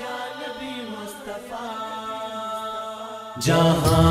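Unaccompanied voices chanting the drawn-out, slowly wavering opening of a naat. About three and a half seconds in, a much louder backing with regular frame-drum beats comes in abruptly.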